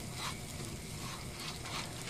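Butter and sugar sizzling faintly in a frying pan as they start to melt for caramel, stirred with a silicone spatula.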